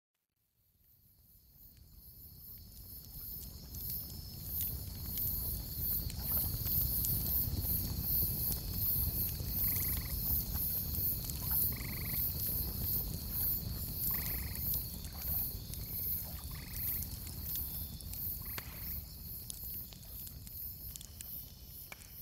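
Outdoor night ambience fading in: insects chirring in a steady high pulse, with a handful of short croaking frog calls now and then, over a low rumble.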